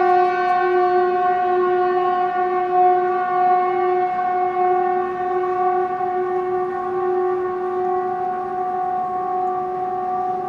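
A loud, sustained horn-like drone held at a single pitch, rich in overtones, easing off slightly toward the end. It is the unexplained 'trumpet sound in the sky' kind of noise.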